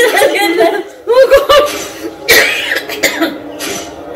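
People laughing in short repeated bursts, with a sharp cough-like burst a little after two seconds in.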